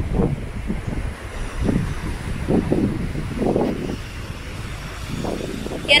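Wind buffeting the microphone, a steady low rumble with faint, muffled voices now and then.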